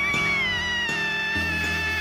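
A long, drawn-out, high-pitched cry of "Nooo!" from an anime character, held for the whole stretch and sliding slowly down in pitch, over background music with low sustained notes.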